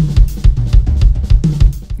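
Pearl Decade Maple drum kit played in a busy groove. Kick and snare hits come about four times a second under ringing cymbals.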